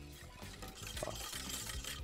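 Faint whisking of béchamel sauce (milk beaten into a butter-and-flour roux) in a saucepan, under quiet background music.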